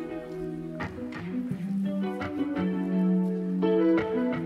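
Instrumental background music: plucked notes over held chords.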